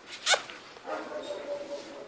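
A dog gives one short, sharp bark about a third of a second in, then a held whine lasting about a second.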